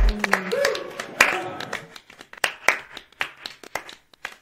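Podcast intro music cuts off abruptly at the start. A brief voice-like sound follows, then a scattered handful of claps that thin out and fade over the next few seconds.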